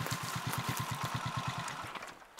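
Trail motorcycle's engine idling steadily, with an even beat of about a dozen pulses a second.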